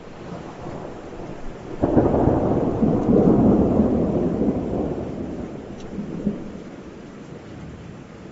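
Rolling thunder over a rain-like hiss. It starts faint, swells suddenly about two seconds in into a heavy low rumble, then slowly dies away.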